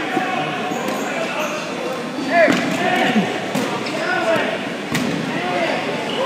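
Dodgeballs bouncing and hitting a gym's hardwood floor, a few sharp knocks, the clearest about five seconds in, over players' voices calling out across the court.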